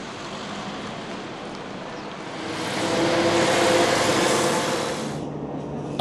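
City street traffic noise, with a passing motor vehicle swelling louder in the middle and then cutting off abruptly about five seconds in.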